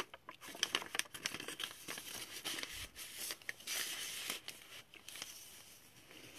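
Paper pages of a handmade junk journal being turned and handled, rustling and crinkling in a run of small crackles and taps, with a longer rustle about four seconds in.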